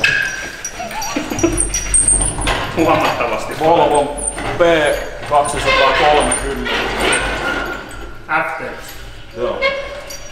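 Mostly men talking, over a low steady hum.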